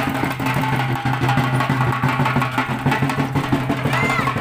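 Rapid, continuous drumming on large barrel drums beaten with sticks, in the style used for Muharram street performances, with a steady low drone underneath.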